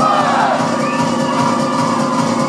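Audience yelling and cheering over loud music.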